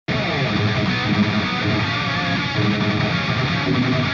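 Background music: a rock track with electric guitar, starting abruptly at the opening and running at a steady level.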